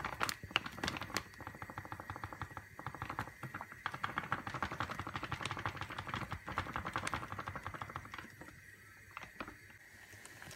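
Faint, rapid crackle of many small clicks from dry flour mix being tipped into a mixing bowl. It dies away about eight seconds in.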